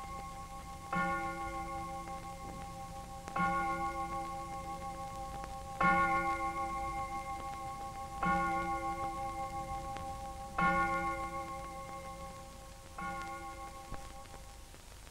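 A single bell tolling slowly on one note: six strikes about two and a half seconds apart, each ringing on and fading before the next.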